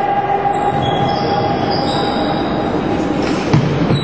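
Steady din of an indoor floorball game in a sports hall. A held tone runs through the first two-thirds or so, with short high squeaks and a single thump about three and a half seconds in.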